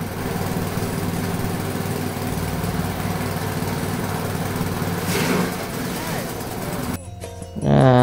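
Small petrol engine of a grass chopper running steadily with no grass fed in yet. The sound cuts off abruptly about seven seconds in.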